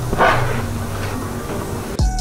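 Plastic spreader scraping and smearing Bondo body filler around on a cardboard mixing board, with a sharper scrape about a quarter second in, over a steady low hum.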